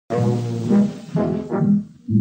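Brass fanfare opening a film score: loud low brass chords held in about three short phrases, fading just before the end.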